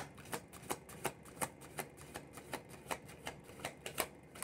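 A deck of tarot cards being shuffled overhand, each drop of cards landing with a sharp snap in an even rhythm of about three a second; the first snap is the loudest.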